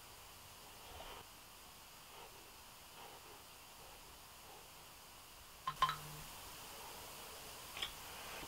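Quiet room with faint soft strokes of a makeup brush buffing foundation on skin. About six seconds in, a couple of sharp clicks and a short low hum, then another click near the end.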